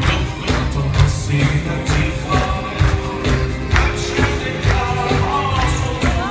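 Live Assyrian pop music from a band, keyboard and electric guitar over a steady drum beat, heard from among the audience in the hall.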